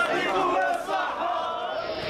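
A crowd of protesters shouting together, many voices overlapping, growing fainter toward the end.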